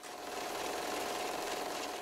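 A steady hum and hiss with one faint held tone, fading away near the end.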